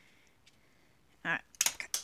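Mostly quiet, with one faint click, then a few quick, sharp clicks of small hard objects being handled near the end, mixed with a woman's brief speech.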